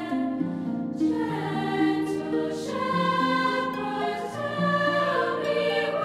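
Girls' choir singing in several parts, holding and moving between sustained notes in a slow choral setting.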